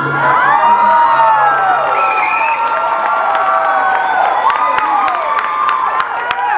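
Audience cheering and whooping right after the music stops, many overlapping high rising-and-falling yells. Sharp hand claps join in near the end.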